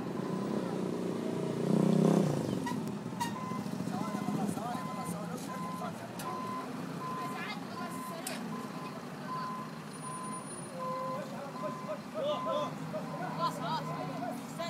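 Construction-machine backup alarm beeping at one steady pitch, roughly three beeps every two seconds, starting about three seconds in, over the running diesel engine of a CAT wheel loader. A brief loud burst comes about two seconds in.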